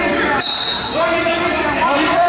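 Referee's whistle, one short steady blast about half a second in, starting the wrestling action, with voices shouting around it in the gym.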